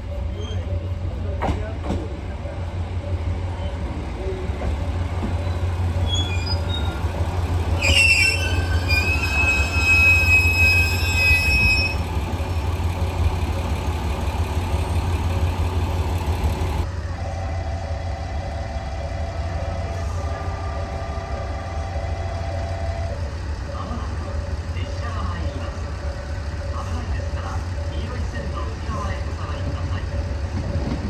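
KiHa 200 series diesel railcar pulling into a station, its diesel engine rumbling steadily, with brakes squealing in high tones for a few seconds about eight seconds in as it slows.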